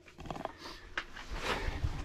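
Rustling and handling noise as the camera is moved, with a few sharp clicks and a cluster of low thumps in the second second.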